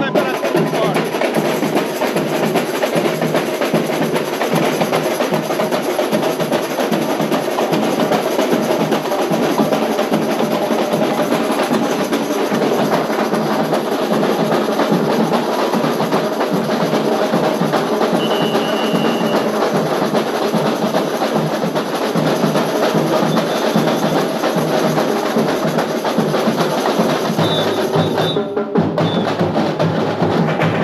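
Live samba school bateria playing a fast, dense samba rhythm on drums, loud and continuous, with a brief dip near the end.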